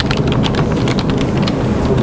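Loud rustling and rumbling on a clip-on microphone, with many small clicks.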